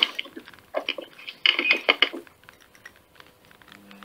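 Clicking and clattering of small hard objects being handled, in two short bursts: one under a second in, the other from about one and a half to two seconds in.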